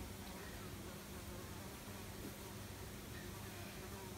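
Faint steady low hum over quiet room tone, with no distinct handling sounds standing out.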